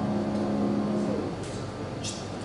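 A Kawai grand piano's held notes ringing on and dying away about a second in, leaving faint room hiss.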